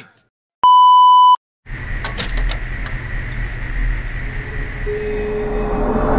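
A single electronic bleep tone, a bit under a second long, about half a second in. It is followed by a steady hiss-like sound that slowly grows louder.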